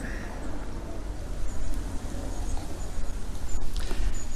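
Wind buffeting the microphone outdoors, a steady low rumble, with light handling noise from the camera held close and a faint click near the end.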